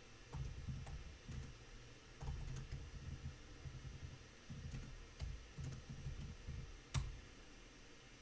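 Faint typing on a computer keyboard: a run of soft, irregular keystrokes, then one sharper click near the end.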